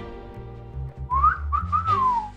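A short whistled tune, one clear note gliding up and down, starting about a second in over soft background music with a steady low bass.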